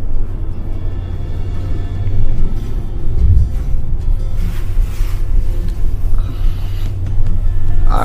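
Low, steady rumble of a vehicle driving slowly over snow, heard from inside the cabin, with music playing faintly underneath.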